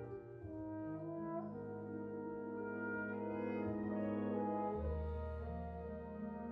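Solo tenor trombone playing slow, held notes over a military wind band of French horns and clarinets. The band swells a little, and a low bass note comes in near the end.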